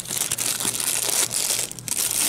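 Small clear plastic parts bag crinkling as fingers handle it and open it, with a short pause near the end.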